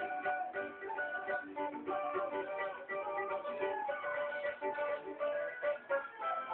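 Cavaquinho played solo: a quick run of plucked single notes, with a few held longer.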